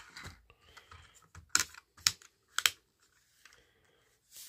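Small plastic clicks and taps from a Playmobil toy motorcycle being handled and rolled on a tabletop, with three sharper clicks about half a second apart midway.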